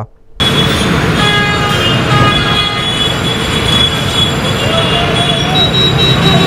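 Busy bus depot din of bus engines and crowd noise, starting abruptly about half a second in, with several sustained high tones sounding over it.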